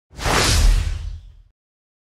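Logo-intro whoosh sound effect: a rush of noise over a deep low boom that swells up fast and fades away by about a second and a half in.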